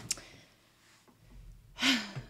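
A woman's sharp, audible intake of breath near the end, after a faint mouth click at the start.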